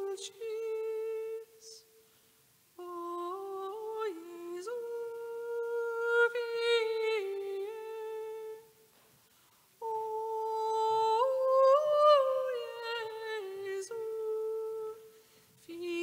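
A single voice singing a slow melody in long, held high notes, with short pauses between phrases about two, nine and fifteen seconds in.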